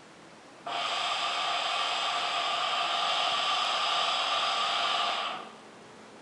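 A hookah being smoked: a long, steady pull on the hose makes the water in the base bubble. The sound starts suddenly a little under a second in, holds evenly for about four and a half seconds, and fades out shortly before the end.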